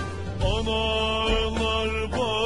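Music: a slow Turkish folk song, a long sung line with wavering pitch over steady low accompaniment, a new phrase beginning about half a second in.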